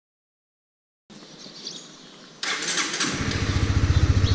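Silence for about a second, then outdoor noise fades in, grows louder about two and a half seconds in, and then a motorcycle engine, plausibly the rider's Honda CBR, starts running with a fast, steady low pulse.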